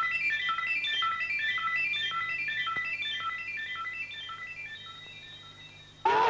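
Electronic background music: a fast, repeating figure of short, high, beep-like notes that fades out steadily, over a faint low hum.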